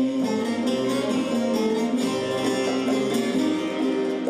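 Turkish folk music ensemble playing an instrumental interlude without voice, led by plucked bağlama lutes over a steady melodic line.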